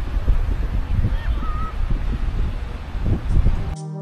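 Wind buffeting the microphone, a loud, uneven low rumble, with a brief faint wavering high call about a second in. Near the end it cuts abruptly to brass music.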